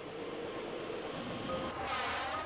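A whoosh riser sound effect: a swelling rush of noise with a thin whistle climbing slowly in pitch, growing louder and breaking off near the end. Faint sustained music notes come in about three quarters of the way through.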